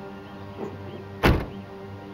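A car door shut once, loud and sudden, about a second in, over quiet background music with steady held tones.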